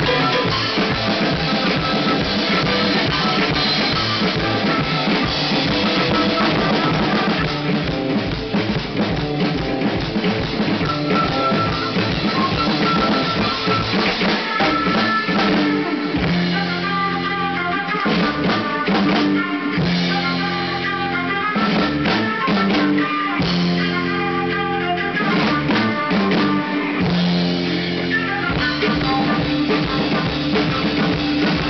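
Drum kit played live in a busy rock pattern of cymbals, toms and bass drum, along with a rock recording in which electric guitar is heard. From about halfway through, the drumming leaves gaps in places and held guitar and bass notes come through.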